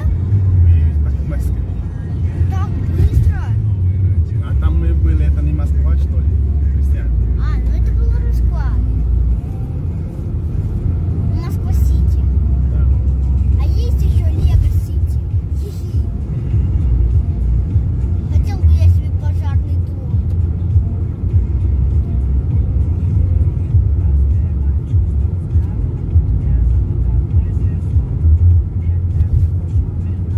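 Steady low rumble of road and engine noise inside a moving car's cabin at highway speed, with faint talk and music over it at times.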